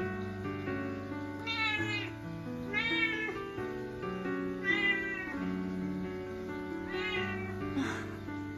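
A Munchkin cat meowing four times, each call rising and then falling in pitch, over steady background music.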